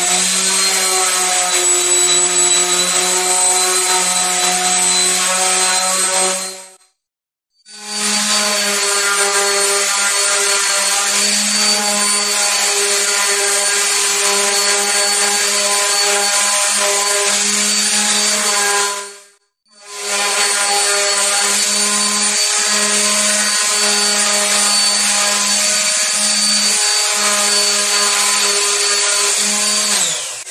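Random orbital sander running on wooden boards with 220-grit paper, a steady motor hum with sanding noise. It stops twice for about a second, near seven and nineteen seconds in, then starts again, and winds down at the end.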